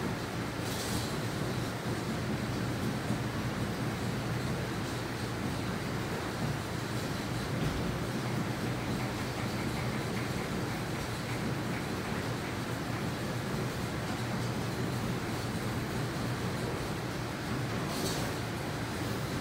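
Belt-driven corn mill running while it grinds corn: a steady, even mechanical rumble of the machinery.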